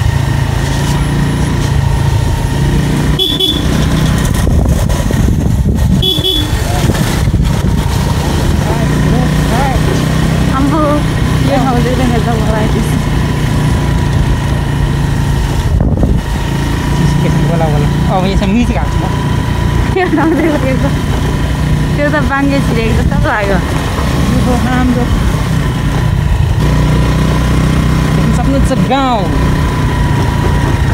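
Small motorcycle engine running steadily while riding along, with a couple of short high toots early on.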